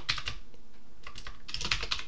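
Typing on a computer keyboard: a few keystrokes, a pause of about a second, then a quick run of keystrokes near the end.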